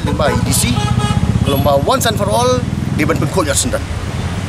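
A man speaking in Khasi, over the low pulsing rumble of a motorcycle engine running close by in street traffic.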